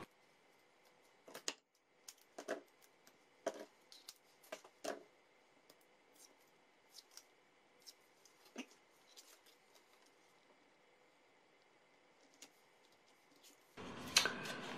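Faint snips and clicks of small craft scissors and light handling of card, a handful of sharp clicks in the first five seconds, then only scattered faint ticks in near silence.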